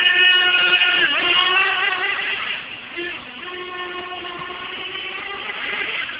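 A 1/8-scale RC late model car's small engine running at high revs as it laps, its pitch dropping and climbing again about a second in and once more near three seconds in, and fading somewhat in the second half.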